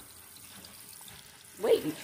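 Water running faintly into a shampoo-bowl sink, a low steady hiss. A woman's voice starts near the end.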